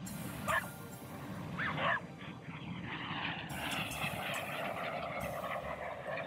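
Two short dog barks in the first two seconds, then the engine noise of Red Arrows BAE Hawk T1 jets building from about halfway and holding steady as the formation flies past.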